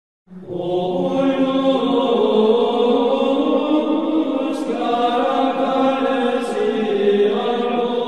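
Sacred choral chant: voices singing slow, long-held notes that step from pitch to pitch.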